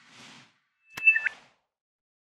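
Intro-logo sound effects: a soft whoosh, then about a second in a sharp click with a short, bright two-tone chirp.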